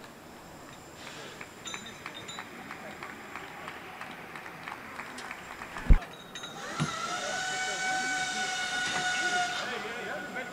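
Work noise of scattered light clicks and knocks over a low background murmur, a sharp thump about six seconds in, then a steady pitched tone held for about three seconds.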